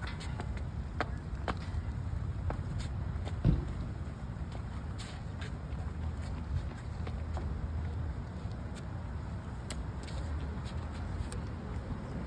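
Steady low rumble of city traffic outdoors, with scattered faint clicks and taps and a dull thump about three and a half seconds in.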